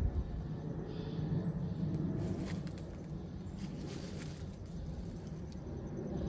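Footsteps crunching on dry leaf litter, a few crackles between about two and four seconds in, over a steady low rumble on the phone microphone.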